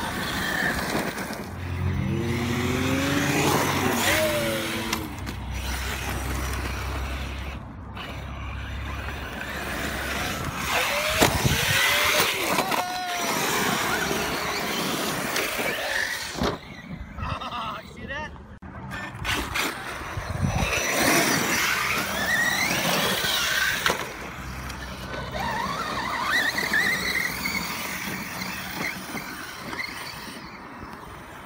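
6S brushless electric RC cars running over loose desert dirt: the motors whine, rising and falling in pitch with the throttle, over the scrabble of tyres in the dirt.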